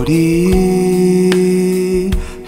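A ballad song: a singer holds one long, steady note after a short upward slide, over soft accompaniment with two light beat hits.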